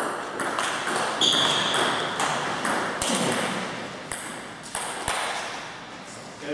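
Table tennis doubles rally: the celluloid-type ball clicking off the bats and bouncing on the table in quick, uneven succession, with a reverberant echo. The rally stops about five seconds in.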